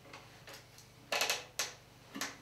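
A few faint ticks, then a short clatter of sharp clicks about a second in, followed by one more click.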